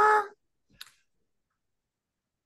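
A man's brief hesitant "uh", then near silence broken only by one faint click just under a second in.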